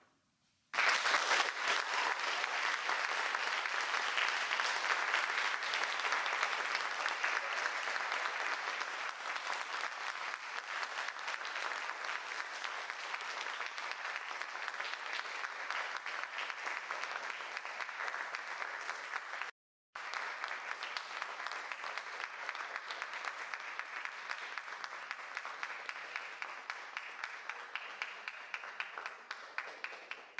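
Audience applauding at the end of a vocal performance, starting suddenly about a second in and slowly thinning toward the end, with a brief cut in the sound about two-thirds of the way through.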